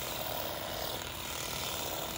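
Stihl HSA 25 battery-powered shear with its grass-shear blade running steadily while cutting grass close around a tree trunk.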